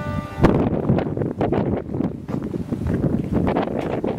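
Wind from a passing dust devil buffeting the microphone in uneven, rumbling gusts.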